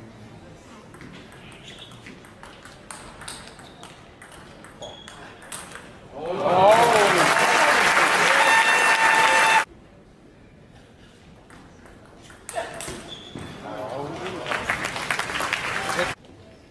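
A table tennis rally, the ball clicking quickly on bats and table, then a loud burst of crowd cheering and applause with a shout. The cheering cuts off suddenly about three and a half seconds later, and crowd noise and voices rise again a few seconds before the end.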